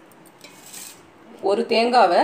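Stainless-steel bowls being handled, with a faint, brief scrape of metal about half a second in.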